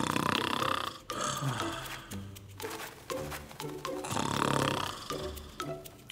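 Cartoon grasshopper snoring loudly in his sleep: two long snores, one at the start and one about four seconds later, over light background music.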